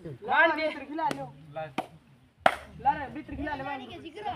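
Men's voices shouting and calling over a kabaddi raid in play, broken by a few sharp slaps, the loudest about two and a half seconds in.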